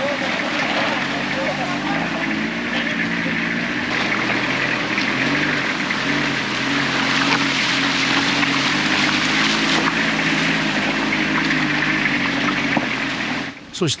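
A van's engine running as it drives through fast muddy floodwater flowing over a gravel road, its pitch shifting up and down, under a steady loud rush of water and splashing around the wheels.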